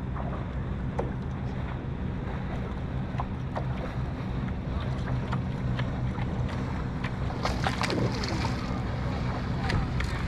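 Wind rumbling on the microphone over water lapping at a kayak hull, with scattered small clicks and knocks, most of them bunched together a little after the middle.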